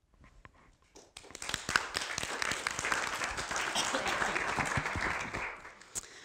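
A small audience applauding. The clapping starts faintly, swells about a second in, holds steady, then dies away near the end.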